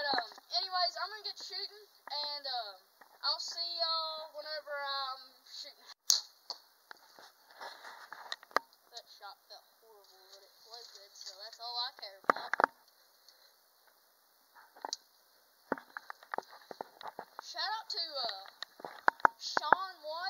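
Voices talking, broken by a sharp snap about six seconds in and a duller thump around twelve seconds, most likely a Bear Cruzer G2 compound bow being shot at a foam block target.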